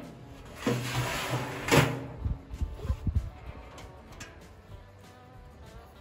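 Steel cooking grate sliding along its rails into a smoker's cooking chamber: a scrape of metal on metal about a second and a half long, with a knock as it starts and a louder clank as it seats. A few lighter metallic knocks follow.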